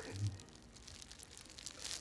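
A man's voice trails off in the first half second. After that the small room goes quiet except for faint rustling.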